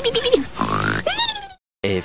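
Cartoon snoring sound effect: a snorting inhale followed by a whistling exhale that falls in pitch, heard twice. It cuts off suddenly about a second and a half in, and a narrator's voice begins at the very end.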